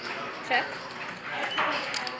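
A man's voice saying the single word "check" over a low background of card-room noise.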